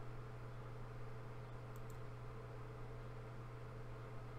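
Steady low electrical hum of the room and recording setup, with two quick computer-mouse clicks a little before the middle, as a checkbox on a web form is ticked.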